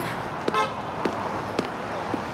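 Busy city street traffic with a short car-horn toot about half a second in, and footsteps at a walking pace.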